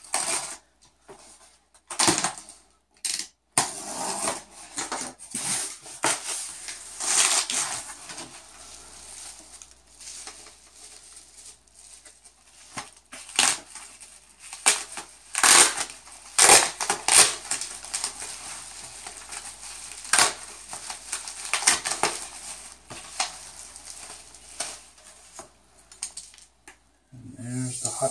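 Irregular packaging handling noise: packing tape slit with a small knife, cardboard flaps opened, and bubble wrap crinkling as it is pulled off a 3D printer's print sheet, with scattered light knocks and clatter.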